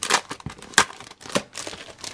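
Clear plastic packaging sleeve crinkling as it is handled and pulled open, with three sharp crackles.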